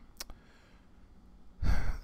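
A man's sigh, a loud breath out close to the microphone that starts suddenly near the end, after a faint click early in an otherwise quiet stretch.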